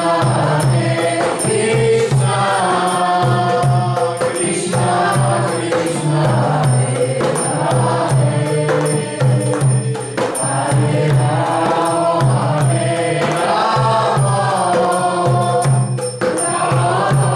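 Devotional Vaishnava kirtan: voices chanting a Hindu hymn in a melodic, repeating line, with percussion keeping a steady beat underneath.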